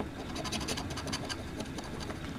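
Large coin-shaped scratching token scraping the coating off a scratch-off lottery ticket, in quick, rapid back-and-forth strokes that start about a third of a second in.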